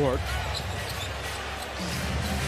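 Basketball being dribbled on a hardwood court, a few short sharp bounces over steady arena crowd noise.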